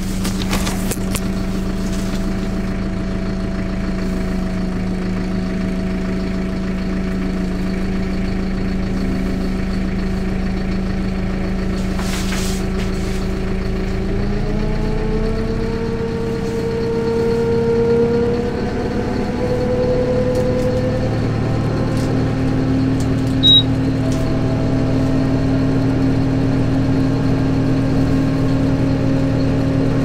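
Kubota M126GX tractor's four-cylinder turbo diesel running under way. About halfway through, the engine speeds up, rising in pitch over several seconds, and then holds the higher speed. A brief high tone sounds about two-thirds of the way in.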